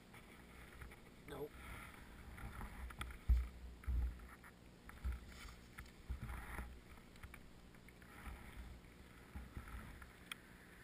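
Irregular low thumps and rustling on a helmet-mounted camera's microphone as the wearer moves about.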